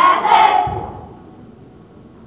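A group of teenage voices shouting in unison, a loud burst in the first moments that dies away into the echo of a large hall.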